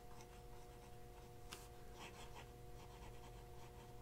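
Faint scratching of a Parker Duofold Centennial fine-nib fountain pen writing on paper, in short strokes, over a steady low hum.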